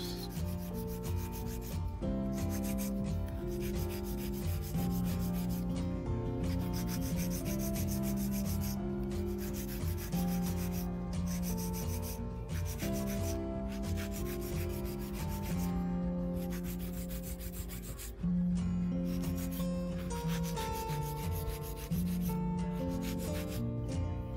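Hand nail file rubbing back and forth along the side of a long square nail in repeated strokes, with several short pauses between runs of filing. Sustained tones that change pitch every second or so run underneath.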